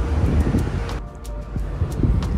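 Wind rumbling on the microphone with outdoor street noise, cut off abruptly about a second in to a quieter stretch with faint background music.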